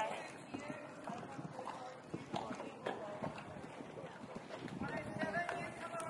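Hoofbeats of a horse cantering on a sand arena surface, a run of soft, even strokes, with people's voices talking over them near the start and toward the end.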